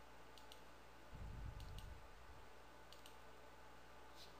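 Faint computer mouse clicks, three quick pairs about a second apart, over a quiet low hum, with a soft low rumble for about a second in between.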